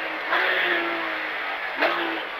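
Porsche 911 (997) GT3 rally car's flat-six engine heard from inside the cabin, a steady note whose pitch eases down slightly, over road and tyre noise.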